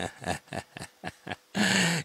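A man laughing in short breathy bursts, about four or five a second, ending in a longer breath.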